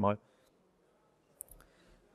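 A man's last word ends, then near silence broken by a couple of faint, short clicks about a second and a half in: a laptop key or trackpad pressed to advance the presentation slide.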